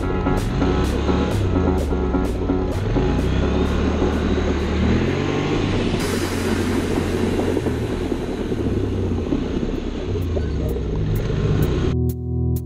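ATV engine running, its pitch rising and falling as the throttle is worked, under background music with a steady beat.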